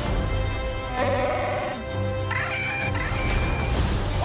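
Trailer score music with a low repeating pulse. About a second in, a wavering tone comes in briefly, followed by a few held higher tones.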